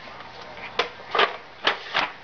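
A toddler scribbling on a windowsill: about four short scratchy strokes and taps of the drawing tip on the sill, the second one a little longer.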